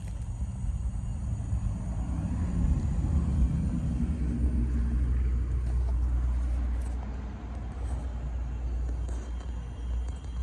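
1998 Rheem Corsaire outdoor air-conditioner units running with a steady low hum from the compressor and condenser fan, louder for a few seconds in the middle.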